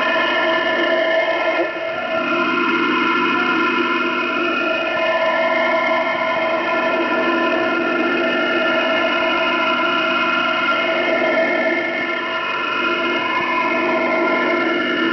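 Shortwave receiver output in lower-sideband mode on an open channel with no voice: steady hiss under a dense drone of many fixed tones, with a few faint whistles gliding in pitch.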